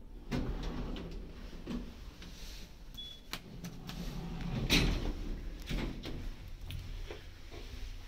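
Inside a Schindler 5500 traction lift car, a floor button is pressed and the sliding doors close with a series of clunks, the loudest about five seconds in, over a low steady hum. A brief high beep sounds about three seconds in.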